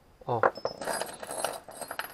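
Loose steel bolts and washers clinking against one another as a hand rummages through a pile of them on a wooden bench: a quick, irregular run of small metallic clinks starting about half a second in.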